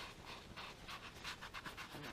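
Gloved fingers rubbing compound into an orange foam buffing pad, a quick run of faint, soft rubbing strokes: priming the dry pad with compound.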